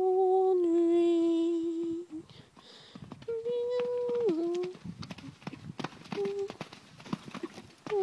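A person's voice holding long, steady vowel sounds: one about two seconds long at the start, another about a second long in the middle that drops in pitch at its end, and a short one later. In the second half come irregular thuds of a pony's hooves cantering on sand.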